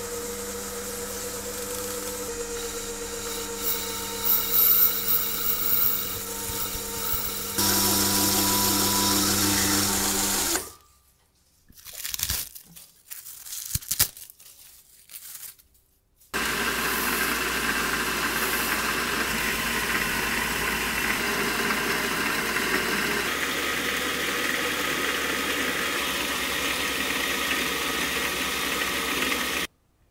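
Metal lathe running with a cutting tool taking a cut on a spinning workpiece: a steady machine hum with the noise of the cut over it. About ten seconds in it stops, a few seconds of short scattered knocks follow, then the lathe runs steadily again and cuts off suddenly near the end.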